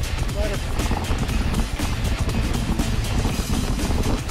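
Wind rushing over a mountain bike's onboard camera with a steady rattle and clatter of the bike running over a dirt singletrack, and a brief voice-like sound about half a second in.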